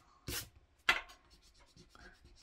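An eraser rubbing pencil guidelines off cold-press watercolour paper: a short rubbing stroke near the start, then a single sharp tap on the paper about a second in, followed by faint scuffing.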